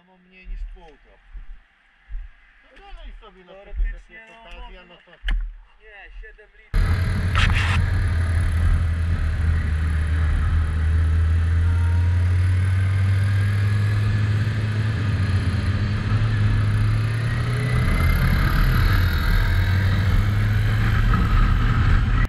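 Faint voices at first, then about a third of the way in a sudden cut to a loud, steady motorcycle engine drone with wind rush, heard from a camera mounted on the moving bike while riding at road speed.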